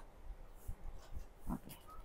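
Quiet shop room tone with a low rumble and faint handling noise, and a soft spoken "okay" about one and a half seconds in.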